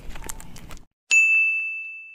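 A single bright bell-like ding, a logo-sting sound effect, struck once about halfway through and ringing out on one clear high tone as it slowly fades. Before it, faint outdoor background stops abruptly in a moment of dead silence at an edit cut.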